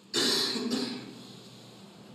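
A woman crying at a witness stand lets out one loud, choked sob just after the start, lasting under a second, then goes quieter.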